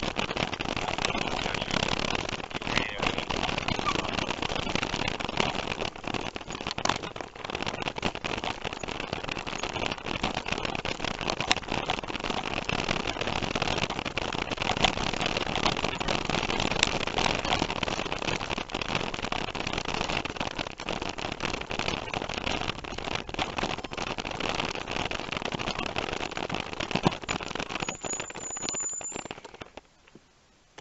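Bicycle rolling fast over a bumpy dirt and grass track: steady tyre noise with constant rattling and knocking from the bike over the ruts. A brief high squeal comes near the end, just before the noise stops.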